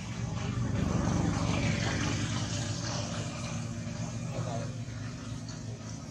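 Engine noise of a passing vehicle, a low rumble that swells in the first second and then slowly fades.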